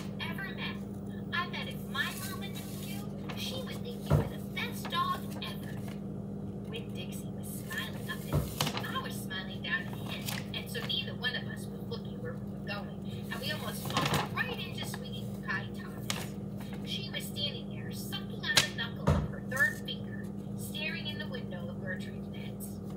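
A felt-tip marker drawing on paper over a hard countertop: many short scratchy strokes, with a few sharp knocks about 4, 8, 14 and 19 seconds in. A steady low hum runs underneath.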